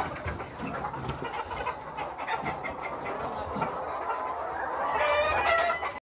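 A large flock of Lohmann Brown laying hens clucking, many overlapping calls at once. A louder, longer call stands out near the end.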